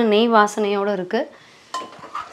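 A woman's drawn-out spoken word for about the first second, then near the end a steel ladle clinks against the aluminium pressure cooker pot as it goes into the dal.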